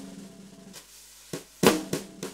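Drum kit playing a sparse intro to a song: about four separate snare and kick strokes, unevenly spaced, each ringing out, the loudest near the end.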